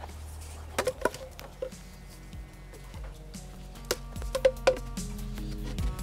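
Rigid PVC pipe and fittings knocking and clicking as they are handled and pushed together by hand, several sharp taps with the loudest pair about two-thirds through. Background music fades in about halfway through.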